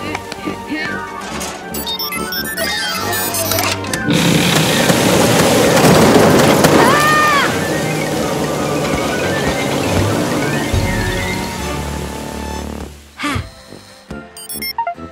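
Cartoon background music, joined about four seconds in by a loud rushing, crashing noise that fades away near the end: the sound effect of a dam giving way and water flooding out.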